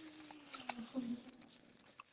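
A faint, drawn-out low voice hum that slides slowly down in pitch, ending just after one second in, with scattered light clicks throughout.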